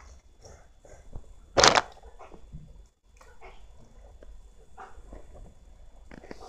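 A dog gives a single short, loud bark about a second and a half in, with faint rustling and small clicks around it.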